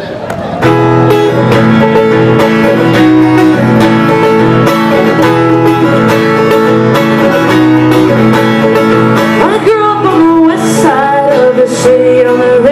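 Steel-string acoustic guitar strumming the chords of a song's intro in a steady rhythm, coming in full about a second in.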